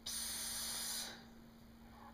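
A person's drawn-out "ssss" hiss, about a second long, the cue sound used to prompt a baby to pee.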